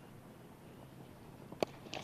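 Low ground ambience, then a single sharp crack of a cricket bat hitting the ball about one and a half seconds in.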